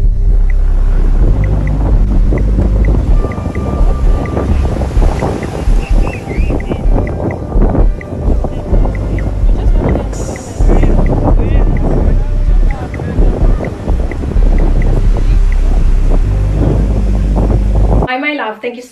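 Wind buffeting the phone's microphone, with waves washing onto the beach. Short high chirps recur throughout.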